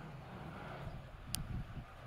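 Faint outdoor background rumble, with one short sharp click about a second and a half in.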